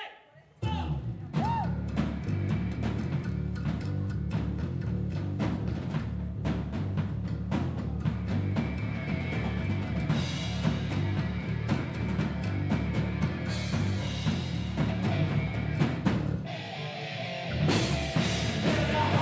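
Live rock band of two electric guitars, bass and drum kit kicking into a song with a loud instrumental intro, starting abruptly about half a second in with heavy guitar and bass under constant drum hits. Near the end the band drops out for about a second, then crashes back in.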